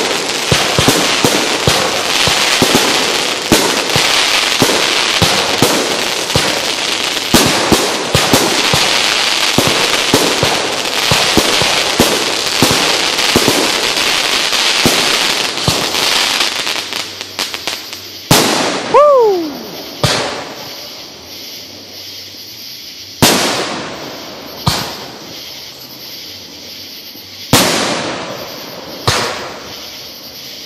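Aerial fireworks display: for about the first seventeen seconds a dense, continuous barrage of crackling and popping, then a string of about seven separate loud booms, each echoing away. One falling whistle comes just after the first of the booms.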